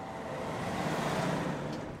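Passing road traffic: a rush of noise that swells to a peak just after a second in and then fades.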